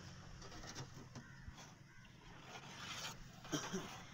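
A few faint clinks and scrapes of a long-handled metal scoop digging hot ash and embers out of a tandoor pit and tipping them into a metal karahi.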